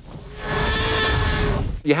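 A creature's call from a film soundtrack: one long, steady-pitched bellow lasting about a second and a half, over a low rumble, ending just before speech resumes.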